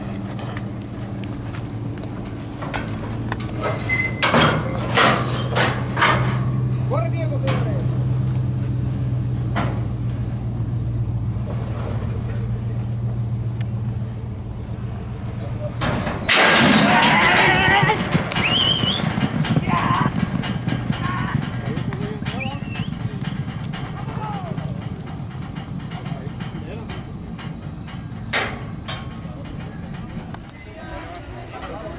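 A vehicle engine idles steadily while the horses are loaded into a starting gate. About sixteen seconds in, the starting gate bangs open, and at once a crowd shouts and yells loudly, the shouting going on as the quarter horses race down the track.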